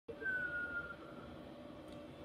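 EMO desktop pet robot's sleeping sound: a single short, thin whistle gliding slightly downward in the first second.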